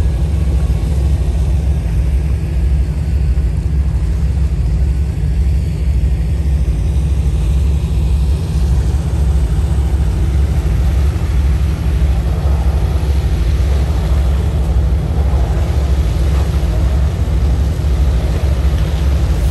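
Catamaran ferry's engines running under way with a steady deep rumble, its stern water jets churning the water.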